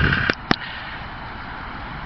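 Steady faint outdoor background hiss, with a low rumble at the very start and two sharp clicks within the first half-second.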